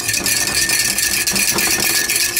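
Hand wire whisk beating a thin milk-and-oil batter fast in a ceramic mug, its metal wires clattering steadily against the mug.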